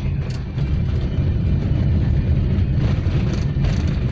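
Car engine and tyre noise heard inside the cabin while driving, a steady low rumble with a few light ticks.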